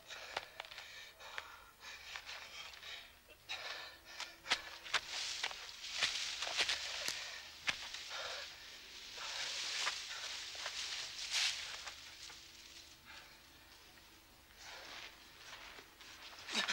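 Rustling of leaves and branches as a man pushes through bushes, with scattered footsteps and twig snaps. Early on there are heavy, pained breaths.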